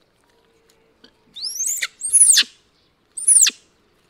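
Baby monkey giving three high-pitched squealing calls, each sweeping up and then dropping in pitch, the last two the loudest.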